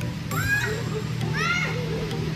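Children squealing and shrieking at play on inflatables: two high-pitched calls that rise and fall, about half a second and a second and a half in, over a steady low hum.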